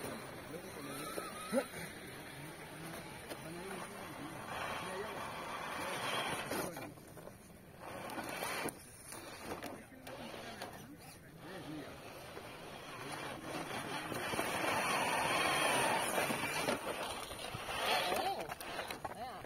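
Electric drive of a 1/10-scale Traxxas RC rock crawler running as it climbs over a rock, swelling in two spurts of throttle, the longer one near the end, with faint voices in the background.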